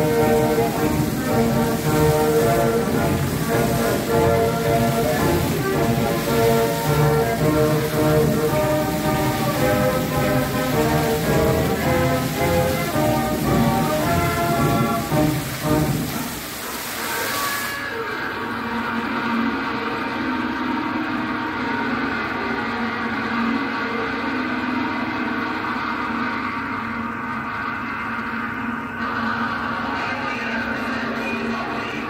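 Splashing of fountain jets falling back into the pool over recorded show music. A little over halfway through, the water noise stops and the music plays on, quieter.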